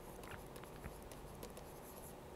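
Faint scratching and light tapping of a stylus writing on a tablet screen, a few short scattered clicks over low room hiss.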